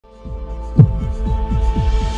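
Synthesized logo-intro sound design: a steady low hum under a held tone, one loud deep hit just under a second in, then a run of quick low thumps that drop in pitch, about four a second, building into the intro music.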